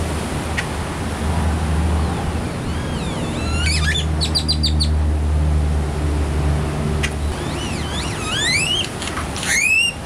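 Great-tailed grackle calling: a few rising whistles, then a quick run of sharp clicking notes, then more upward-sweeping whistles ending in a loud rising whistle near the end. Surf washes underneath.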